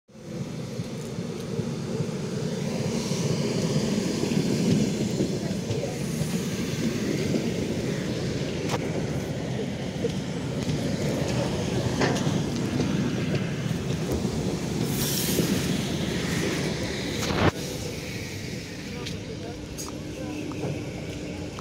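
ED9M electric multiple unit rolling past along a station platform: a steady rumble of the cars, with wheel clicks over rail joints. A brief hiss comes about three quarters of the way in, and a sharp bang, the loudest sound, comes near the end.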